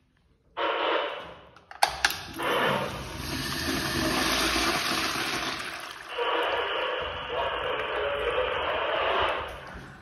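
An American Standard Pintbrook wall urinal being flushed by its flushometer valve. The water comes on with a sudden rush, there is a sharp click about two seconds in, and water then runs steadily through the bowl before easing off near the end.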